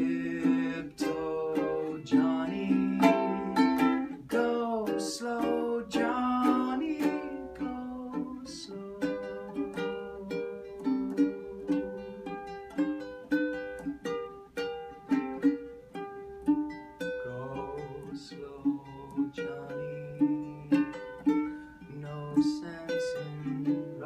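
Ukulele strummed and picked in a steady rhythm, playing an instrumental passage of the song. A man's voice sings along over roughly the first seven seconds.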